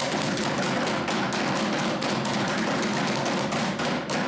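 Many hands thumping on wooden desks in rapid, overlapping strokes: legislators' desk-thumping in approval of a line in a speech.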